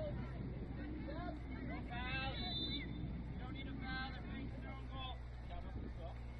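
Distant shouts and calls from soccer players and sideline voices, two clearer calls about two seconds in and around four seconds, over a steady low rumble.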